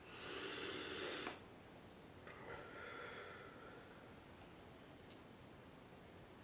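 A man's slow, deep breaths, heard plainly: a long noisy breath lasting just over a second at the start, then a softer one about two seconds later with a faint whistle. These are deliberate breaths taken while concentrating.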